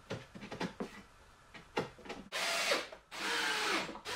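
A few light knocks of plywood panels being fitted together, then a cordless drill pre-drilling screw holes in 9 mm plywood in two short runs, starting a little over two seconds in. The holes are pre-drilled to keep the thin plywood veneers from splitting.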